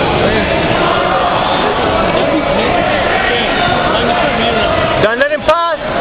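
Overlapping voices echoing in a large hall, with one man calling out loudly about five seconds in.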